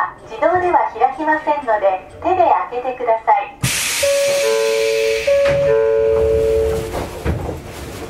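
A voice for the first few seconds, then a sudden loud hiss of released air from the standing train, lasting about three seconds with two steady alternating tones sounding over it, and dying away near the end.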